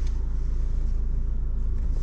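Ford Ranger pickup's engine idling, heard from inside the cab as a steady low rumble.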